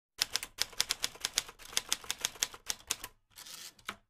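Rapid typing, keys clacking at about six strokes a second for three seconds, then a short hiss and a last click near the end.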